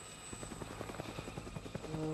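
Helicopter rotor blades chopping in a quick, steady, faint beat. Music comes in with sustained tones near the end.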